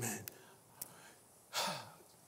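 A man's breathy sigh into the microphone about one and a half seconds in, in an otherwise quiet gap broken by one faint click.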